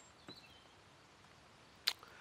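Faint birds chirping in a quiet background, with a single sharp click or tap near the end.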